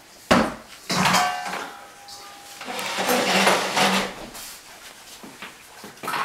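A sharp knock, then rustling and handling noise, with a thin squeaky tone held for about a second early on.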